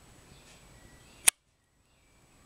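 Faint room tone, then a single sharp click about a second in, after which the sound cuts off at once into dead silence: a break in the recording.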